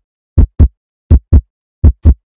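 Heartbeat sound effect, as heard through a stethoscope: steady, even double thumps (lub-dub), three beats in two seconds. It is a heartbeat that sounds okay, "really good".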